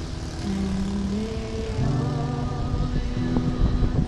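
A woman singing long held notes to her own strummed acoustic guitar, over a steady low rumble.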